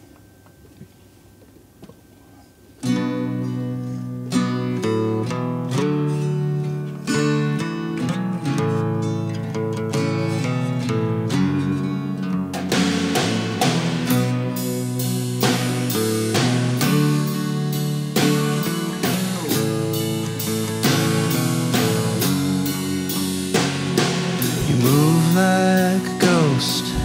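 A quiet pause for about three seconds, then a band starts a song: an electric guitar and an acoustic guitar play chords with a drum kit. The drums come in more fully about twelve seconds in.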